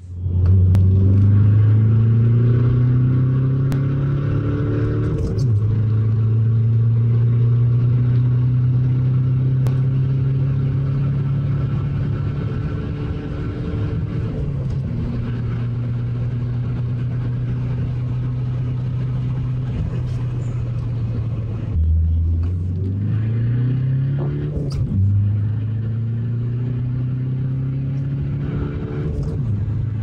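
Stage 1 tuned 1.9 TDI ARL diesel of a four-wheel-drive VW Golf IV, about 180 hp, pulling hard under full acceleration, heard from inside the cabin. The engine note climbs slowly through each gear and drops briefly at each of about five manual gear changes.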